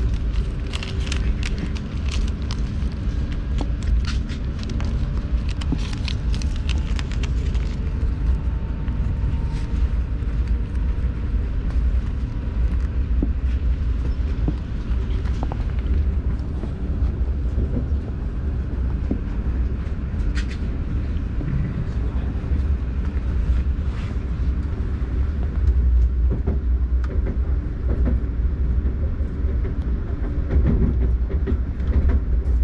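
Lastochka ES2G electric train running at speed, heard from inside the carriage: a steady low rumble of wheels on the track, with bursts of sharp clicks and knocks over the first several seconds and a few more later.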